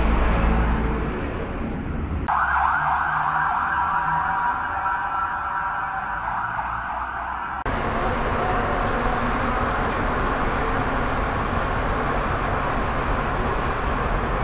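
Subway train car in motion: a continuous rumble and hiss for the second half. Before it comes a steady high-pitched whine lasting about five seconds.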